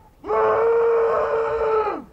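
A man's voice imitating a motorbike engine: one long, loud, steady, high-pitched "baaaa" drone, starting about a quarter second in and cutting off just before the end.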